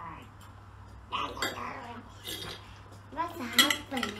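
Metal forks clinking and scraping against a dish as food is picked up, in several short knocks, the loudest near the end. A child's short vocal sound comes in near the end.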